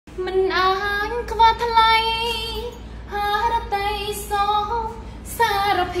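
A high-pitched voice singing unaccompanied, holding long notes in two or three phrases with short breaks between them.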